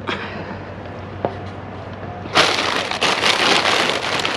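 Crinkling and rustling of plastic snack bags and wrap being handled in a dumpster, starting loudly a little over two seconds in after a quieter stretch with a faint steady hum.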